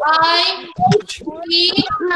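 A young child's high voice, drawn out and sing-song, answering aloud.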